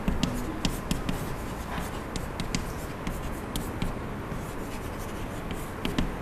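Chalk writing on a blackboard: a run of sharp chalk taps and short scratchy strokes as words are written out.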